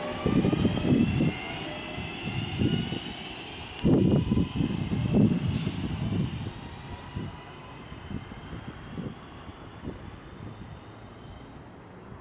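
Class 323 electric multiple unit pulling away, its traction motors giving a whine of several tones that climbs steadily in pitch as the train accelerates, with irregular low rumbling underneath. The sound fades as the train draws away.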